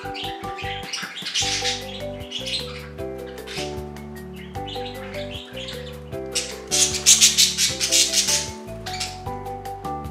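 Budgerigars chirping and warbling in quick high chatter over a light instrumental background tune; the chatter comes in short spells and is loudest for about two seconds past the middle.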